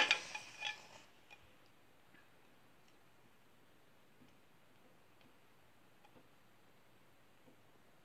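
Clear acrylic stamp block being dabbed onto an ink pad: a sharp knock at the start and a second of handling noise, then only a few faint ticks as the stamp is re-inked.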